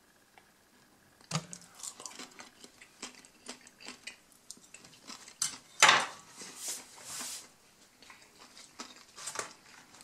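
Eating breaded chicken schnitzel: chewing with many small crunchy clicks, and a metal fork set down with a sharp clatter on a wooden table a little before the halfway point, followed by a brief rustle.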